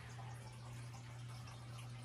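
A low steady hum under faint hiss.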